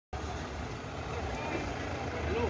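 Steady low rumble of a vehicle engine, with faint distant voices.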